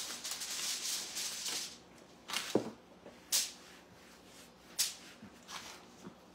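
Hands dusting flour over rolled dumpling dough and rubbing it on a floured pastry mat: a soft rustling hiss for the first second and a half or so, then a few short scrapes and taps.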